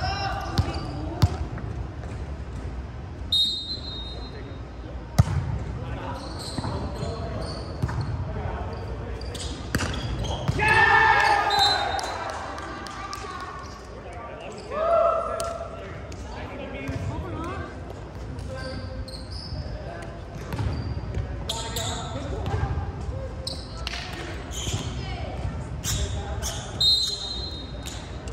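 An indoor volleyball rally in a large hall: a few sharp smacks of the ball being hit, mixed with players' shouts and calls. The loudest is a long call about ten seconds in, with another a few seconds later.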